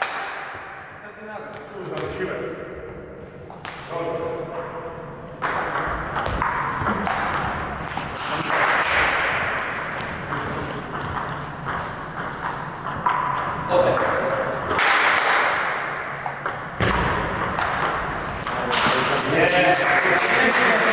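Table tennis balls clicking sharply off bats and tables in a reverberant sports hall, with scattered voices in the background.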